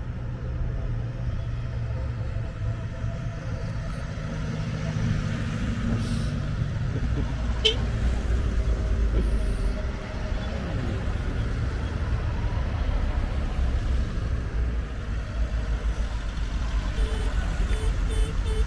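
Classic cars driving past one after another, a steady low rumble of engines and tyres on the road.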